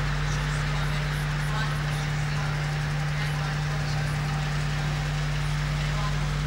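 Steady, even noise of a column of T-72 tanks driving past, with their V-12 diesel engines and tracks, under a constant low hum. Faint voices show through about a second and a half in.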